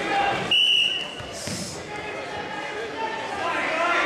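A referee's whistle blown once, a short, steady, high blast about half a second in, starting the wrestling from the referee's position, over crowd voices and shouts in a gym.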